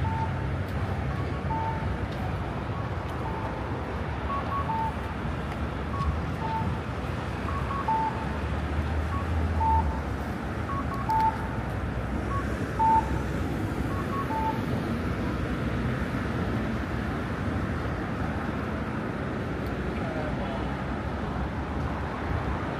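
Audible pedestrian crossing signal sounding short electronic beeps in two alternating pitches, repeating roughly once a second and stopping about two-thirds of the way through. Low traffic noise runs underneath.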